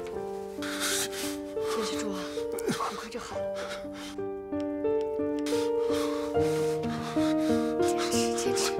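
Background score of long held notes moving in slow steps, over a man's strained breaths and groans of pain as a bullet is cut out of him without anaesthetic.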